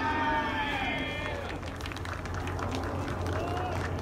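A voice at a ballpark calls out in one long shout that falls in pitch, followed by a few sharp clicks and another short call near the end, over a steady low hum.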